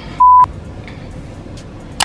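A single loud, pure-tone censor bleep lasting about a quarter second, cutting off a word, followed by quiet room tone.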